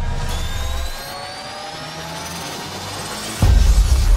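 Synthesized riser sound effect from a logo animation: a noisy, jet-like sweep with several tones climbing slowly in pitch. About three and a half seconds in, a loud deep bass hit lands and heavy low music begins.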